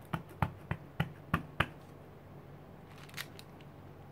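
Clear stamp on an acrylic block dabbed repeatedly onto an ink pad to ink it: about six quick taps, roughly three a second, then a couple of faint ticks near the end as it is pressed onto the paper.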